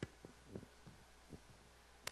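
Near silence: a steady low hum with a few faint, soft low thumps scattered through it.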